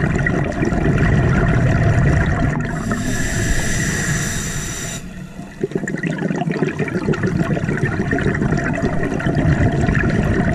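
Scuba diver breathing through a regulator underwater. A bubbling exhale opens the clip, a steady hissing inhale follows about three seconds in and lasts about two seconds, then another long bubbling exhale.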